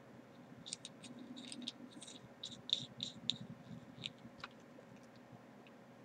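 Faint, irregular small clicks and scratches of hands handling a metal e-cigarette mod and multimeter test leads, thickest in the first half and thinning out toward the end.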